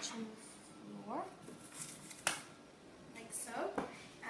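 A young woman's voice speaking in a small kitchen, with one sharp click a little past the middle.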